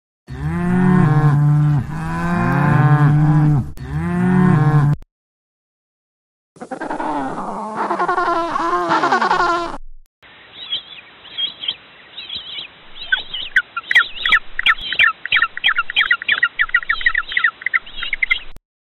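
A cow mooing three times, each call low and about a second and a half long, over the first five seconds. After a short gap and a brief, different sound, a fast run of short, high penguin calls begins about ten seconds in.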